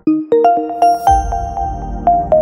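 Channel logo sting: a quick climbing run of chime-like struck notes that ring on, with a brief shimmering swish and a deep bass swell coming in about a second in.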